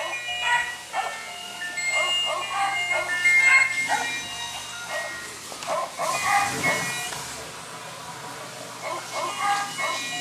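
A musical greeting card's sound chip playing a thin, high electronic melody, note after note. A toddler's squeals and babble repeatedly come in over it.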